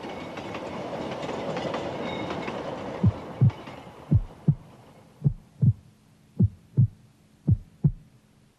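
Rumble of a train of wagons rolling along the track, fading out over the first few seconds. As it dies away a slow heartbeat comes in: five low double thumps, lub-dub, about a second apart.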